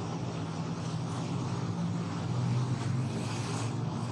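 A steady low mechanical hum, like an engine running, swelling slightly in the middle.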